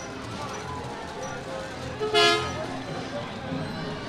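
A vehicle horn toots once, a short steady blast about halfway through, over low street and crowd background.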